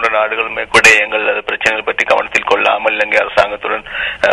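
A man speaking without a break, his voice thin and narrow as over a telephone or radio line.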